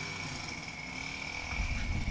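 Faint steady motor running, with a thin high whine throughout and a low rumble that swells near the end.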